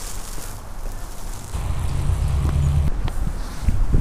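Outdoor city street ambience: a low rumble swells for a second or two in the middle, with a few faint clicks.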